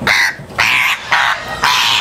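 African grey parrot screeching harshly in a run of about four calls, one after another, as it is wrapped in a towel to be pulled from its cage: the sound of a frightened, struggling bird.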